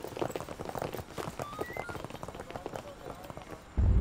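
Footsteps of several people on pavement, irregular and overlapping, with faint voices behind them. Near the end, loud sustained background music comes in suddenly.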